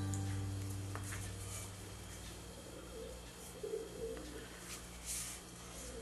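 Faint cooing of a bird, a few soft calls in the middle, over a low steady hum that slowly fades.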